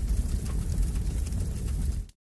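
Logo-card transition sound effect: a steady low rumble with a faint hiss above it.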